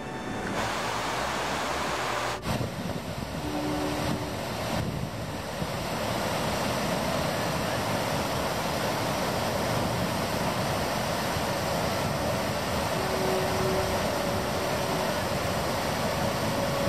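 Steady rushing noise, even in character, that shifts abruptly about two and a half seconds in and settles again.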